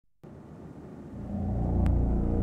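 A low rumbling drone that comes in just after the start and swells louder about a second in.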